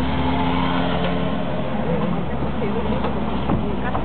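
Inside a Mercedes-Benz taxi's cabin as it drives slowly through traffic: steady engine hum and road noise, with a brief knock about three and a half seconds in.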